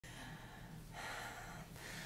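A faint human breath, a soft swell of breath noise lasting under a second about halfway through, over low room hiss.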